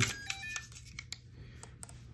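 Zhiyun Crane M3 gimbal being handled, with a few short electronic beeps in the first half-second. Several light plastic clicks follow as its axis locks are worked.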